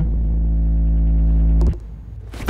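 A loud, steady low hum with a stack of even overtones, cutting off suddenly near the end.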